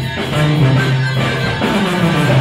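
A live regional Mexican band playing a song, with a sousaphone holding a steady bass line under accordion, saxophone, guitars and drums.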